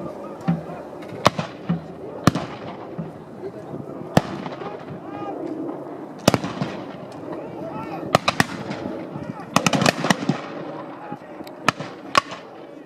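Black-powder muskets firing blank charges: about a dozen sharp cracks, each trailing off in an echo. Single, spaced shots come first, then a ragged burst of several in quick succession about two-thirds of the way through, and one more near the end.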